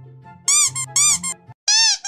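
Soft background music, then from about half a second in a series of loud, high squeaks in quick pairs, each rising and falling in pitch, like a rubber squeeze toy being squashed.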